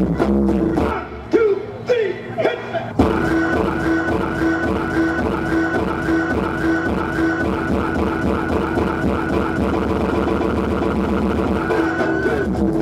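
Electronic dance music played live on a Roland keyboard synthesizer. The bass and beat drop out briefly for a break with gliding synth notes, then come back in full about three seconds in with a steady pulsing beat and a repeating high synth line.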